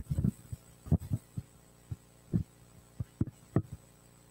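A run of irregular dull thumps and knocks, about ten in four seconds, the loudest about a second in and near the end.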